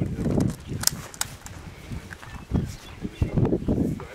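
Two sharp clicks about a third of a second apart, over gusty low rumble on the microphone.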